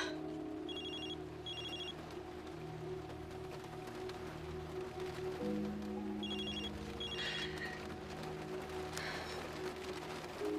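Telephone ringing twice, each ring a quick pair of warbling electronic trills, the second ring about five seconds after the first, over quiet sustained music.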